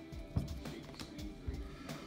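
Trading cards being slid and flicked against each other in the hands, a few light clicks, the sharpest about half a second in, over faint music.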